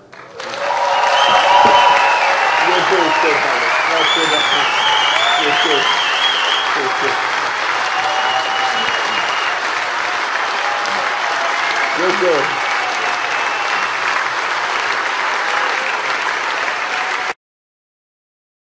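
Audience applauding steadily, with a few whistles and shouts of cheering; it cuts off suddenly near the end.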